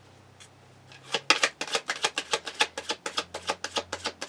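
Tarot cards being shuffled by hand: a rapid, even run of dry clicks, about eight a second, starting about a second in.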